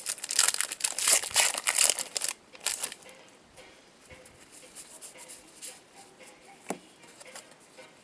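A trading-card pack wrapper being torn open and crinkled in the hands, a dense run of crackling for about the first three seconds. Then quieter handling of the cards, with one sharp click late on.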